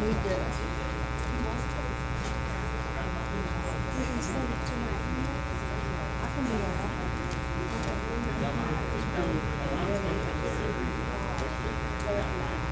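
Steady electrical buzz with many even overtones, running without a break under the faint, indistinct murmur of people talking in the room.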